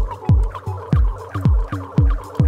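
Electronic music played live: a deep kick drum with a quickly falling pitch, about two beats a second, with crisp cymbal or hi-hat ticks between the beats and short wavering synth notes over them.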